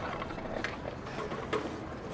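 Low background ambience with three faint light knocks or clicks spread through it.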